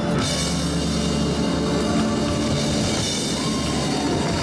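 Live band music with a drum kit playing a rock-style beat, a burst of high, bright sound right at the start ringing on under the instruments.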